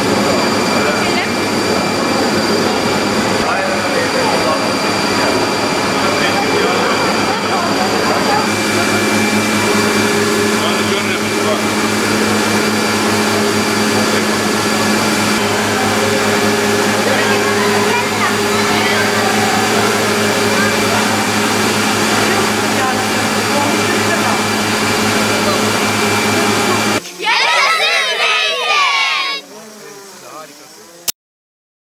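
Olive oil mill machinery running with a loud, steady hum over children's chatter. About 27 seconds in, the machine noise cuts off and a short burst of voices follows.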